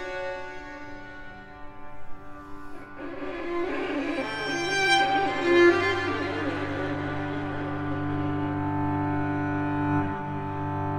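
A string quartet playing long bowed notes. The sound thins after the start, grows fuller from about three seconds in, and a low held cello note comes in around four seconds in and sustains.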